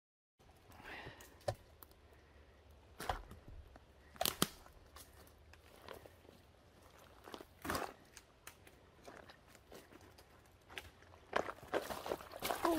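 Footsteps of a person walking through wet, brushy swamp undergrowth, with scattered crunches and cracks every second or two at irregular intervals.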